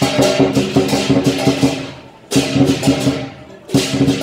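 Lion dance percussion: drum and hand cymbals played in fast, loud rhythmic strikes, in phrases broken by short pauses about two seconds in and again near the end.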